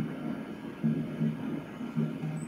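A low hum that swells and fades several times, with no clear words.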